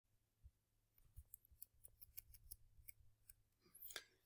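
Near silence with a dozen or so faint, irregular clicks: the ticking of a computer mouse's scroll wheel as the document is scrolled.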